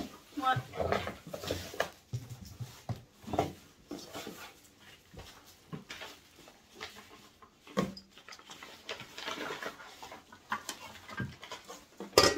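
Rustling and handling of paper wrapping and cardboard as small items are taken out of a large box, in short scattered bursts, with low voices now and then.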